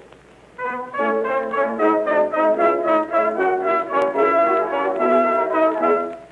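Instrumental introduction of a 1907 Edison cylinder recording: a brass-led band plays the waltz-time opening of the song, starting after a brief quiet gap. The sound is narrow and thin, cut off above the upper middle range as on an acoustic-era cylinder.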